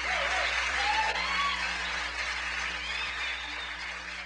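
Audience applauding at the end of a live performance, the clapping slowly dying away.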